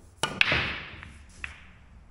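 Pool break shot: a click of the cue on the cue ball, then a sharp crack as the cue ball hits the racked balls, which scatter with a clatter that dies away over about a second. One more ball click about a second and a half in.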